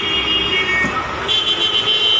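Busy street traffic noise with a steady high-pitched tone over it, sounding briefly at the start and again, longer, from just past halfway.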